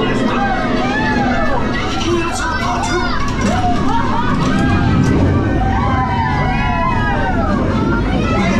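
Voices talking, with the ride's low rumble growing heavier about halfway through, inside the dark cabin of the Star Tours motion-simulator ride.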